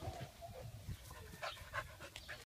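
Two dogs play-wrestling: faint dog vocal sounds with scuffling, a short held vocal tone at the start and a few short sharp sounds in the second half.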